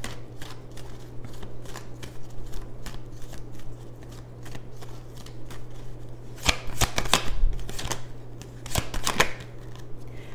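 A deck of tarot cards being shuffled and handled: a run of light card flicks and riffles. There are louder spells of shuffling about six and a half seconds in and again around nine seconds.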